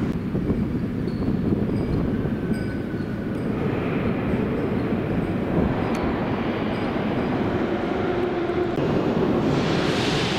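81-717/714 'Nomernoy' metro train running through the station with a steady low rumble and faint drifting tones, growing louder and hissier near the end.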